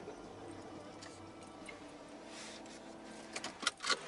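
Faint steady hum, then a few sharp clicks and knocks near the end as the camera is handled inside the car.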